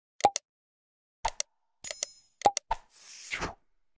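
Subscribe-button animation sound effects: a few short pops and clicks, a brief bell ding about two seconds in, and a noisy whoosh near the end.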